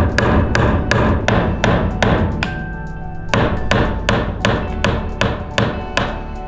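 Claw hammer driving nails into a pine board lying on a solid wooden floor: sharp strikes about three a second, with a brief pause about halfway through.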